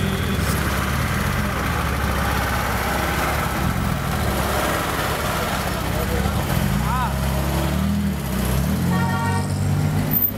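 Motor vehicle engine idling steadily close by, a low even hum, with indistinct voices in the background. A short pitched tone sounds near the end.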